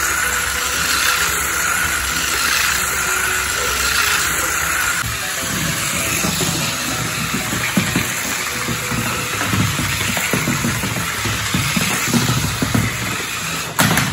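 Small electric motor of a Maisto R/C Cyklone Motobike toy whirring steadily as the toy drives and spins on a hardwood floor. From about five seconds in it is joined by irregular knocks and rumbles of the toy against the floor.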